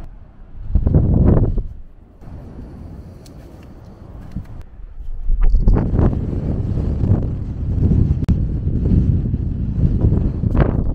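Wind gusting on the microphone over the rush of Atlantic waves crashing on the rocks at the foot of the cliffs. A swell near the start, a lull, then steady rumbling from about halfway through.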